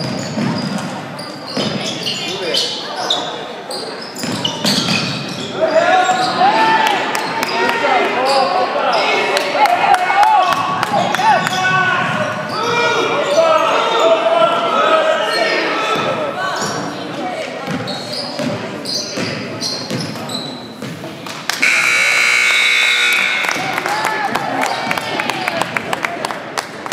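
A basketball dribbling and bouncing on a hardwood gym floor, with players and spectators shouting, echoing in the gym. Near the end, the scoreboard horn sounds one steady blast of about two seconds as the game clock runs out.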